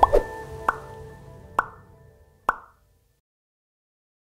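Outro music fading out, punctuated by short pop sound effects, four in about two and a half seconds, that cuts to dead silence after the last one.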